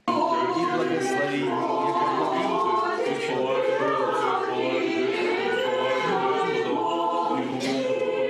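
Orthodox church choir singing liturgical chant a cappella, several voices holding long sustained notes together.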